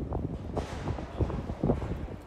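Wind buffeting the microphone in irregular low rumbling gusts over quiet street ambience, with a rise in hiss about half a second in.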